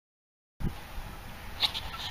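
Silence, then outdoor field ambience from a handheld camera microphone cuts in abruptly about half a second in, starting with a low thump over a steady low rumble, with a short high-pitched sound about a second later.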